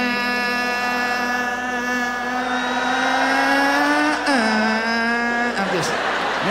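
A man singing one long held note on the word "I", through a microphone. The pitch creeps up slightly, then steps down to a lower note about four seconds in, and the note breaks off shortly before the end.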